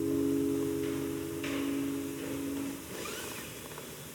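The final strummed chord of a Martin acoustic guitar ringing out and fading away, dying out about three seconds in and leaving faint room noise.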